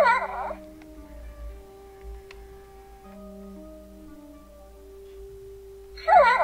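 Animatronic Baby Yoda toy responding to a light touch on its head: a short electronic baby coo right at the start, then soft held musical notes that step from pitch to pitch.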